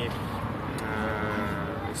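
A man's drawn-out hesitation sound, a steady low "eeh" held for over a second in the middle of a sentence.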